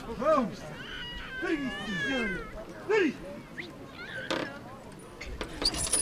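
Several short shouted calls from people's voices, each rising and falling in pitch, with a single sharp knock about four seconds in.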